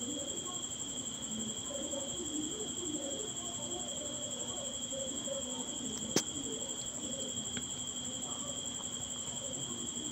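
Quiet background with a steady high-pitched whine and faint low warbling sounds, while scissors cut through cotton fabric; one sharp click about six seconds in.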